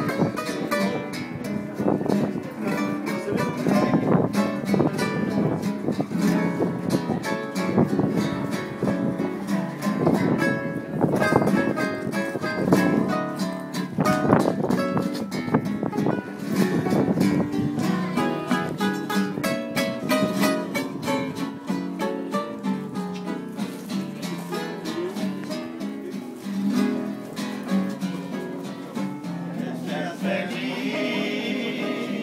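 Two acoustic guitars strumming and picking a song.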